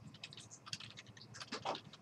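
Computer keyboard being typed on, keys clicking in short irregular runs as a web address is entered.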